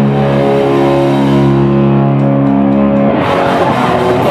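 Live hardcore band: an electric guitar chord held and left ringing, then the full band crashes back in a little after three seconds in.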